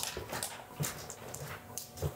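Footsteps on a hard floor: a few soft knocks about half a second apart as a person walks away, over faint room noise.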